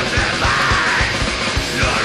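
Extreme metal band playing live: dense distorted guitars, rapid bass drum hits and a shouted vocal.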